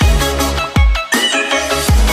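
Electronic background music: a synth melody over deep bass hits that drop in pitch about once a second, with no singing.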